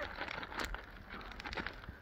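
Plastic zip-top bag crinkling and rustling faintly as it is handled at its seal, with a few light clicks.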